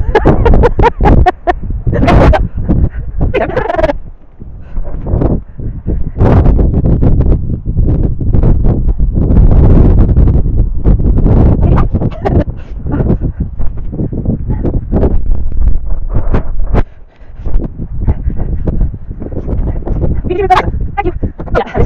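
Wind buffeting the microphone in an open field, a loud, gusty rumble. There is a burst of laughter a few seconds in.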